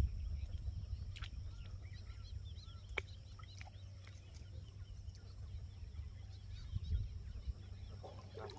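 Faint outdoor ambience: scattered short bird calls over a low rumble, with two sharp clicks, about one second and three seconds in.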